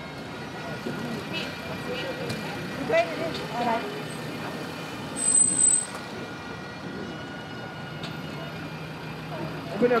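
Range Rover SUVs pulling away slowly one after another, engines running under a steady outdoor hum, with scattered voices. A brief high squeak comes about five seconds in.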